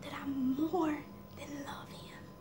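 A woman crying: a breathy, wavering voiced sob in the first second, then a shorter, fainter one near the end.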